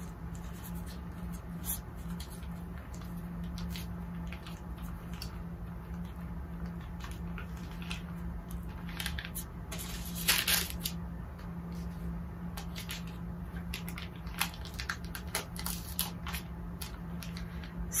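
Quiet handling sounds from pressing an applique on parchment paper with a small iron: light rustles and taps as the iron is set down and moved, with a louder paper rustle about ten seconds in, over a steady low hum.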